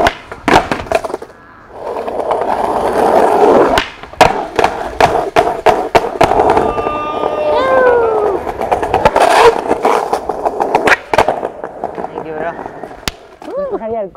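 Skateboard rolling on stone paving and steps, with repeated sharp clacks of the board and wheels hitting down as it pops and lands. A brief falling tone sounds about halfway through.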